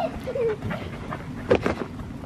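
Cockapoo panting close by, with one sharp click about a second and a half in.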